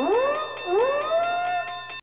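Short synthesized music sting: rising, siren-like pitch swoops over a held high chord, a new swoop starting at the beginning and another about two-thirds of a second in, cutting off abruptly at the end.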